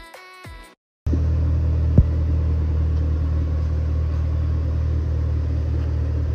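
Music ends in the first second. After a short break, a car engine starts idling, a loud, steady low rumble, with one sharp click about a second after it begins.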